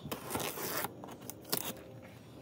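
Packing tape on a cardboard shipping box being cut open. A longer scraping cut comes first, then a few short sharp strokes.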